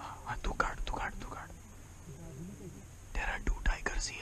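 Hushed whispering voices in two short spells, one at the start and one near the end, with a faint low voice between them.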